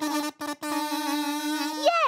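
Toy kazoos being played: a few quick short notes, then one long held note that bends in pitch at the end.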